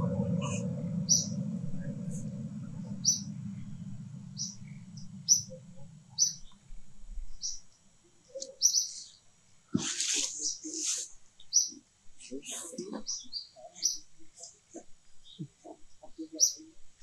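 Birds chirping in short high notes about once a second. A low rumble fades away over the first six seconds, and a brief burst of louder, shrill calls comes about ten seconds in.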